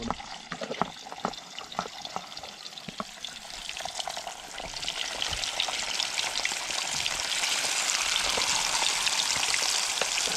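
Pieces of tilapia dropped into hot oil in a wok and frying. The crackling sizzle starts sparse and grows louder and denser after about four seconds.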